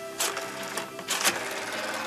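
Rotary wall telephone being dialled: the dial whirrs and clicks as it spins back after each digit. Music from a television plays underneath.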